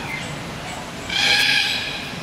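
Rainbow lorikeet giving one high, raspy screech about a second in, lasting under a second.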